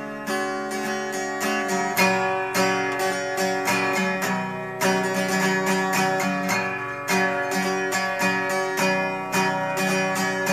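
Steel-string acoustic guitar strummed in a steady rhythm, a few strokes a second, moving through the G, C, E minor and D chords of a simple beginner progression. The chord changes about every two to three seconds.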